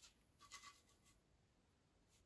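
Faint scratchy strokes of a paintbrush dabbing acrylic paint onto a stretched canvas, a short cluster of strokes about half a second in.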